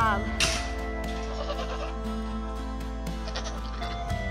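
Nigerian Dwarf goat giving a falling bleat that tails off right at the start, then a short rustling scrape about half a second in, over steady background music.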